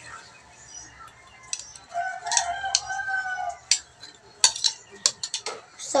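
A rooster crowing once, one long call lasting nearly two seconds. Then a quick run of sharp metal clinks as a ladle knocks against a cooking pot.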